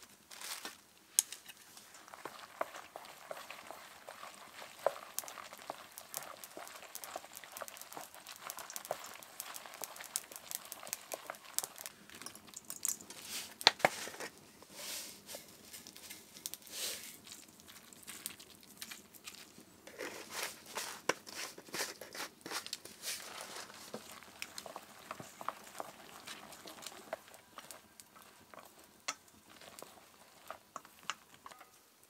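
Wooden chopsticks stirring raw egg through chopped flowers in a stainless steel bowl: a moist, crinkly rustling and squishing with irregular sharp clicks of the chopsticks against the metal bowl.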